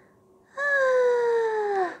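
A woman's high, put-on puppet voice giving one long moan that slides slowly down in pitch, starting about half a second in. It acts out the sock puppet's sick tummy ache.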